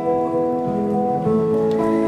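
Acoustic guitar accompanying a live song, held notes shifting to a new chord a couple of times.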